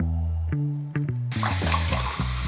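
Hot water running from a kitchen faucet into a ceramic mug to warm it, a steady rushing hiss that starts about a second and a half in. Background music with a steady bass line plays throughout.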